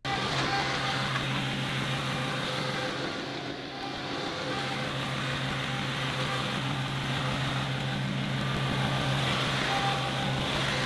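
John Deere 2038R compact tractor's three-cylinder diesel engine running steadily with a low hum as the tractor drives over the gravel. It dips a little a few seconds in as the tractor moves off, and grows louder toward the end as it comes back close.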